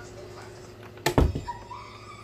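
A single dull thump about a second in, followed by a brief high-pitched whine.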